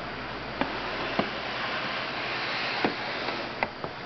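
Steady room hiss with about five short, sharp clicks and knocks spread through it: plastic snake-rack tubs being handled as one is closed and the next is pulled open.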